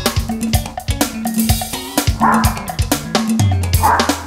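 Funk groove on an electronic drum kit and electric guitar, with a small dog's bark dropped into the beat twice. A low bass note comes in and is held near the end.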